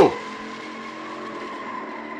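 Car tyres squealing with a steady high tone as the 1968 Dodge Charger R/T peels off in a burnout. The film soundtrack is heard played through the room's speakers.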